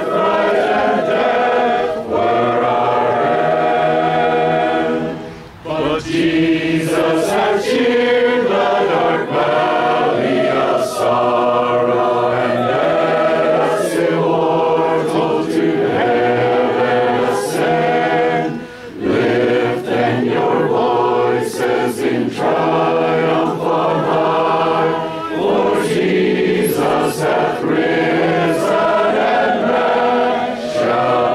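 A congregation of men and women singing a hymn together without instruments, in long phrases with two brief breaks between lines, about five and a half and nineteen seconds in.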